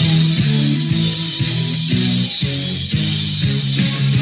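Rock music with guitar and bass playing a steady line of repeated notes, from an early-1980s new wave rock band recording.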